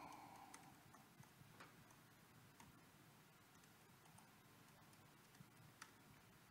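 Near silence with a few faint, scattered keyboard clicks as a command is typed.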